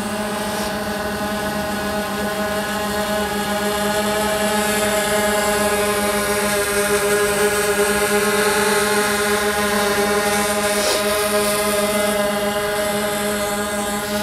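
DJI Phantom 2 quadcopter hovering low, its four brushless motors and propellers giving a steady buzz of several held tones. It grows a little louder as the drone drifts close, in the middle, then eases back.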